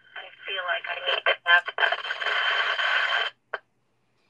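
A pull-string talking Butterbear toy speaks in a thin, tinny recorded voice through its small voice box. The voice gives way to a steady scratchy hiss, and a single click sounds near the end.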